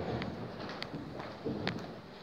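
Room noise from a seated audience, with three sharp knocks or clicks spread through it.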